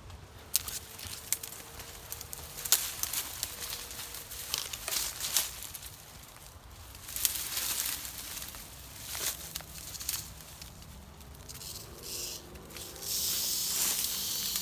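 Dry brush and twigs rustling and snapping in irregular crackles as someone pushes through a thicket. Near the end a Western diamondback rattlesnake starts rattling, a steady high buzz: its defensive warning.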